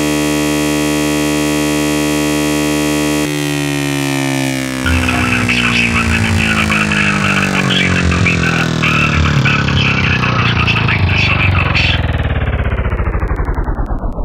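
Electronic synthesizer effect: a held chord that, about three seconds in, starts sinking in pitch and keeps falling, ever faster, like a power-down or tape-stop. A crackling noise rides over the falling sound through the middle, and it all drains away at the end.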